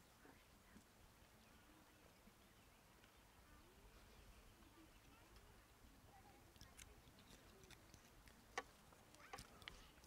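Near silence: faint outdoor background with a few soft clicks in the last few seconds.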